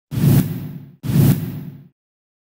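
Broadcast logo-sting sound effect: two whooshes back to back, the second about a second in, each with a low boom beneath it and fading out within a second.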